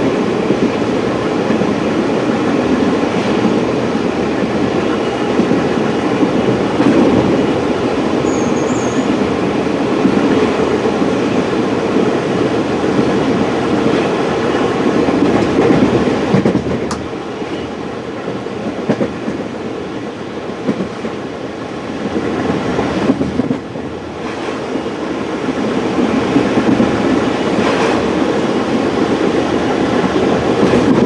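Passenger train running at speed, heard from inside the carriage: a steady rolling noise of wheels on the rails. It goes somewhat quieter for a few seconds a little past the middle.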